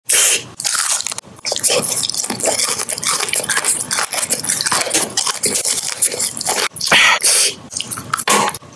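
Close-miked crunching and chewing of a Nerds Rope: the small hard Nerds candies crackle as they are bitten off the gummy rope, amid wet mouth sounds. Louder bursts come right at the start and about seven seconds in.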